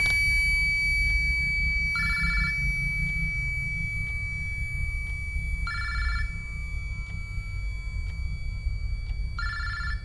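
A telephone ringing three times, in short rings about three and a half seconds apart, over a steady low rumble.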